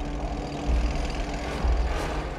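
Tank engines running, a deep uneven rumble with a steady low hum under it.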